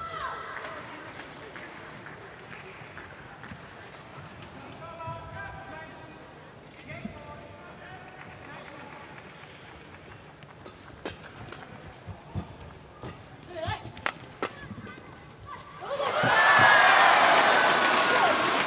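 Badminton rally: a run of sharp racket strikes on the shuttlecock, with short shoe squeaks on the court, over a low arena murmur. About 16 seconds in, the crowd breaks into loud cheering and shouting as the point is won.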